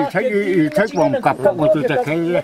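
An elderly man's voice talking without pause. His speech is loud and animated.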